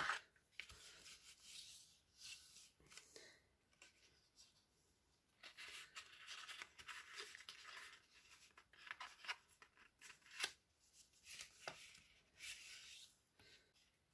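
Faint scraping and rustling of card stock being handled and pressed, with a bone folder drawn along a fold, in short scattered strokes and a few light clicks.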